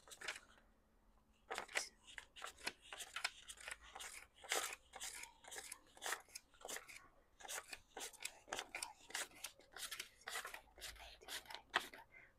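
Paper one-dollar bills being counted by hand: a quick, irregular run of soft, crisp flicks and rustles as each bill is peeled off the stack.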